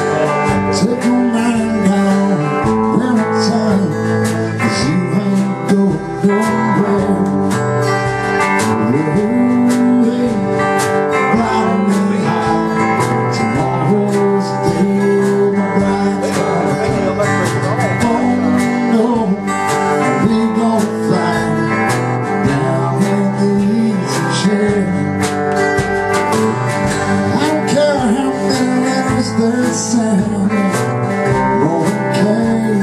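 Live country-folk band music: a strummed acoustic guitar and an electric guitar playing together steadily.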